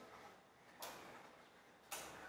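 Near silence: faint room tone with two soft, brief swishes about a second apart.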